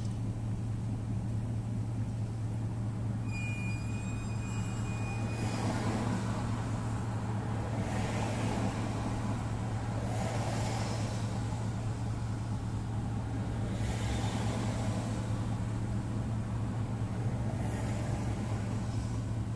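Car idling in stopped traffic: a steady low hum, with passing vehicles swelling and fading four times. A brief thin high whine sounds for about two seconds a little after three seconds in.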